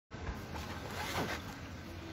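Soft rustling of hands and shirt sleeves moving close to a phone microphone, over a steady background hiss.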